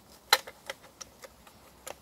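A small-mammal live trap being handled and wedged under a tree root: one sharp click about a third of a second in, then a few faint ticks.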